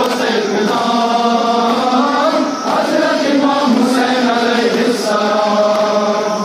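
Men's voices chanting a noha, a Shia mourning lament, in long held phrases with brief breaks between them.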